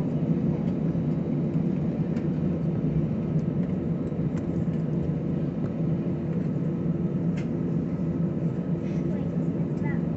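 Airliner cabin noise during taxi: the engines run at low power as a steady, even hum, with a few faint clicks now and then.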